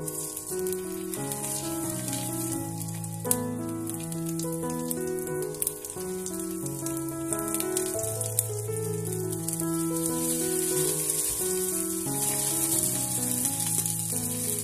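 Salmon fillets sizzling in butter in a hot nonstick frying pan. The sizzle starts as the first piece goes in, with a few sharp pops along the way, and grows stronger in the second half, under soft piano music.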